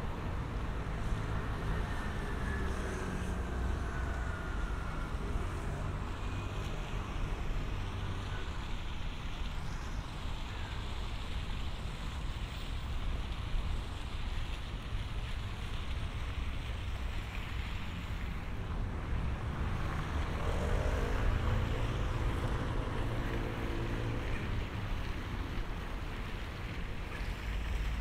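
Wind rumbling on the microphone over a steady outdoor rush. About two-thirds of the way in, a low droning hum with several tones rises in and holds for a few seconds before fading.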